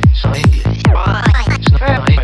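Electronic trance track with a fast, steady kick-and-bass pulse. A rising synth sweep builds through the first half, and warbling, bubbly synth lines come in near the end.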